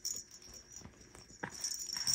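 Faint rattling and handling noises from a baby's plush avocado rattle toy, with light scattered clicks and a sharper tick about one and a half seconds in.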